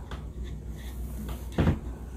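A single short, dull thump about one and a half seconds in, over a low steady hum.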